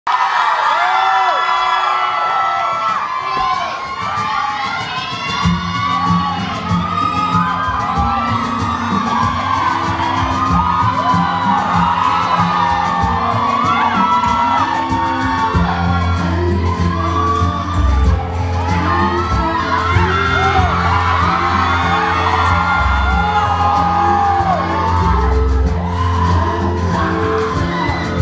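An audience cheering and screaming. About five seconds in, dance music with a low bass line starts, and the cheering carries on over it.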